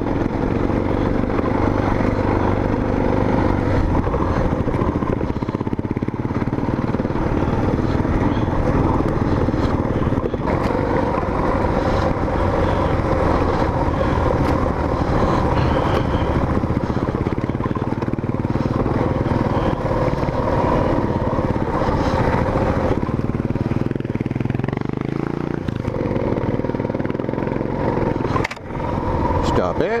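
Dual-sport motorcycle engine running under load as it is ridden up a rocky dirt trail, its note rising and falling with the throttle. There is a brief dip in the sound near the end.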